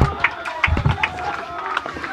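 Faint shouts and cheers of a small football crowd and players celebrating a goal, with a couple of low thumps and scattered claps.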